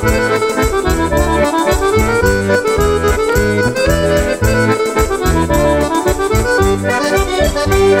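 Accordion playing a lively traditional dance tune, with a melody line over a steady, repeating bass rhythm.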